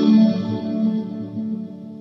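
Electric guitar chord through a Boss Tera Echo pedal with all controls at 12 o'clock, played on a Fender American Performer Stratocaster into a Blackstar Studio 10 6L6 amp. Its reverb-like ambient tail rings on and fades toward the end.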